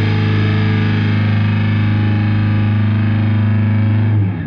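Electric bass played through distortion and effects, holding one long, steady low note.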